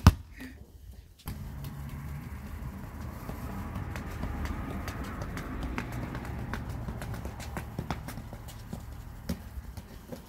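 A soccer ball being juggled on a foot: a run of short, light thumps, roughly one or two a second, over a steady low rumble that starts about a second in.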